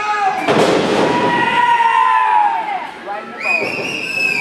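A heavy thud about half a second in as a wrestler lands from a dive off the top turnbuckle into the ring, followed by the crowd cheering and shouting, with long drawn-out shouts and a high yell near the end.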